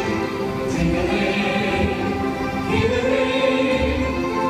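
Recorded Christmas song with a choir singing sustained notes over a beat of low drum hits, with a cymbal-like crash about every two seconds.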